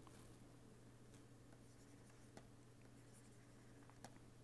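Near silence: faint scratches and taps of a pen stylus writing on a tablet, over a steady low electrical hum.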